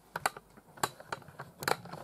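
Irregular light clicks and taps from two laptops being handled and set into place side by side.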